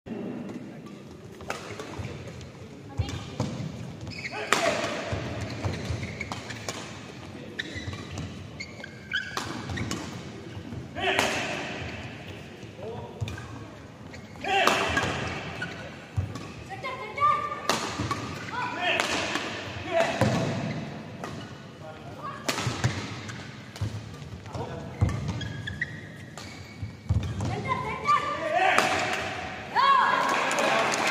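Badminton doubles rally: repeated sharp racket strikes on the shuttlecock and players' footfalls on the court, with voices.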